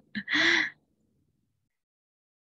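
A woman's short vocal exclamation through a video-call microphone, about half a second long, then the audio cuts suddenly to dead silence.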